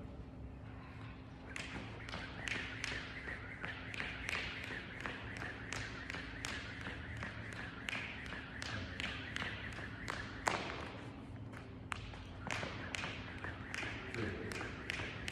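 Skipping rope slapping the rubber gym floor in a quick steady rhythm, about three slaps a second, starting about a second and a half in, with a faint steady hum underneath.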